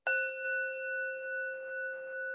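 A metal singing bowl struck once with a mallet, ringing on with a steady low tone and several higher overtones; the highest overtones fade within a second or so while the low ring carries on with a gentle waver in loudness.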